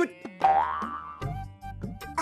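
Comic twang sound effect with a rising pitch, starting suddenly about half a second in and fading over about a second, over background music.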